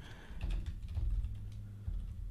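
Computer keyboard typing: a quick, uneven run of keystrokes, fairly faint, over a low steady hum.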